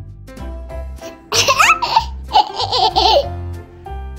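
A young girl laughing loudly for about two seconds, starting just over a second in: a rising squeal, then a run of short ha-ha pulses, over upbeat children's background music.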